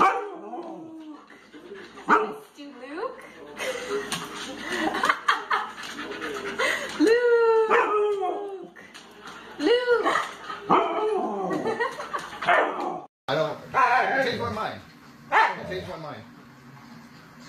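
Husky vocalizing in a run of yowls, yips and short howl-like calls that rise and fall in pitch, with a brief break about thirteen seconds in before another husky's calls follow.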